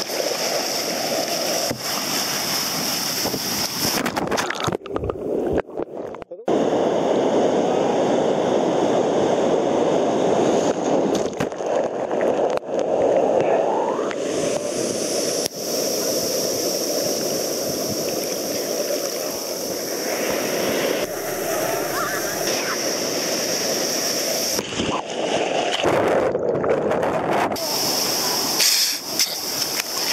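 Sea surf breaking and water sloshing and splashing right against a camera held at the waterline, a dense rushing wash that cuts out briefly about five seconds in.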